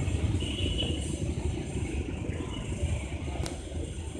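Low rumble and rattle of a departing passenger train's coaches rolling away over the rails, slowly fading as the train draws off.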